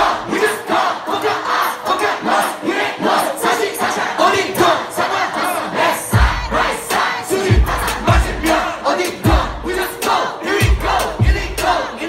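Hip-hop concert crowd shouting and chanting along with the rappers, with the bass beat dropped out. A heavy kick drum comes back in about halfway through, hitting irregularly under the crowd.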